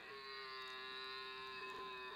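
A recording played from a phone's animal-sounds app and held up to a microphone: one steady, unwavering tone with many overtones, held for about two seconds and stopping near the end.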